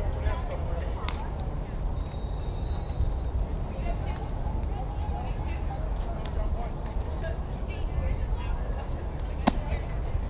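Distant players' voices calling across the field over a steady low rumble of wind on the microphone, with a brief thin whistle-like tone a couple of seconds in and a single sharp crack near the end.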